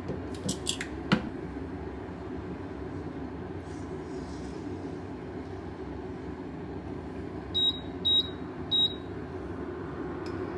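Three short, high electronic beeps from an appliance's control panel near the end, over a steady low hum; a metal measuring spoon clicks a few times in the first second.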